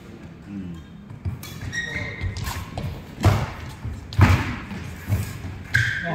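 Badminton rally: rackets striking the shuttlecock in sharp cracks about once a second in the second half, over low thuds from the players' footwork on the court.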